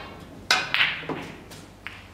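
Snooker shot heard through a television's speaker: a sharp click of cue on cue ball about half a second in, then lighter clicks of ball on ball near the end.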